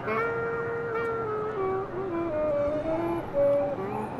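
Saxophone playing a slow melody of long held notes, single-line, with small slides between pitches.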